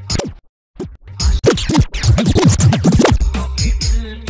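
Electronic dance remix of a Hindi film song. The beat cuts out suddenly for about half a second, then a fast run of DJ scratch sweeps, rising and falling in pitch, fills the break before the bass beat comes back near the end.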